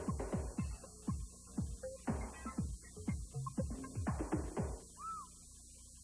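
Station-ID jingle music on a worn VHS tape: a rapid run of short hits that each drop quickly in pitch, with a brief arching tone about five seconds in, where the music stops. A steady high-pitched tape squeal and a low hum run underneath.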